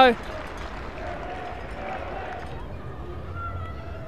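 Steady low background noise of a sparsely filled football stadium, with faint calls from the pitch. The hiss thins out about two and a half seconds in.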